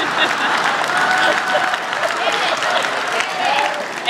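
Audience applauding, an even patter of many hands clapping, with faint voices underneath.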